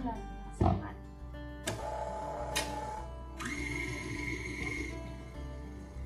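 Background music over a KitchenAid Artisan stand mixer running with its dough hook, kneading a stiff dough, with a few sharp clicks and a steady high whine in the middle.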